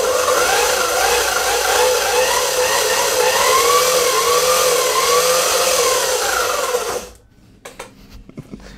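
A homemade scooter's 24 V 250 W electric motor running hard, with a whine that rises and falls over a loud hiss of drive noise. It cuts off abruptly about seven seconds in.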